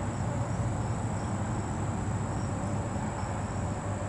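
Insects chirping: a continuous high-pitched trill with faint short chirps repeating over it, above a low steady rumble of background noise.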